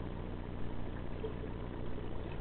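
Muffled underwater noise as heard by a camera in a waterproof housing: a steady low hum and rumble with a faint hiss over it.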